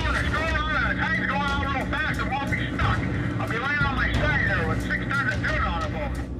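A voice talking over the steady low drone of a boat's engine.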